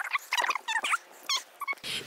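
A series of short, high-pitched animal calls in quick succession.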